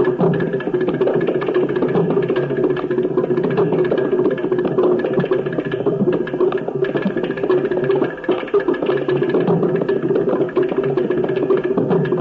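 Carnatic concert percussion: rapid drum strokes played without singing, over a steady drone.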